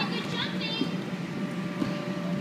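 Background of a children's sports class: indistinct voices over a steady low hum, with a short high-pitched sound about half a second in.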